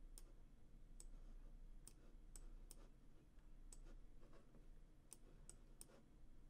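Faint, irregular clicks from computer controls, about ten over the stretch, as an image layer is dragged and resized on screen.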